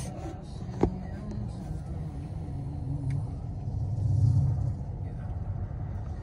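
Steady low rumble of a car idling, heard from inside the cabin, swelling briefly a little past the middle. A single sharp knock about a second in.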